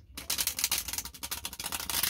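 A deck of tarot cards being shuffled by hand: a fast, dense run of card flicks and slides.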